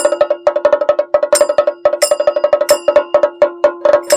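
Percussion-led folk music: a fast, even run of pitched drum strokes over a steady two-note tone, with a bright metallic clink about every two-thirds of a second.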